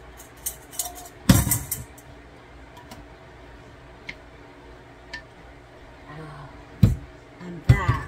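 A stainless steel bowl knocking against a glass mixing bowl as chopped octopus is tipped in, with one loud ringing clank about a second in, followed by scattered clicks and knocks of a wooden spoon stirring salad in the glass bowl.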